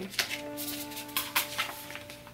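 Background music with long held notes, under the crackle of a rolled paper poster being unrolled, loudest just after the start and again about halfway through.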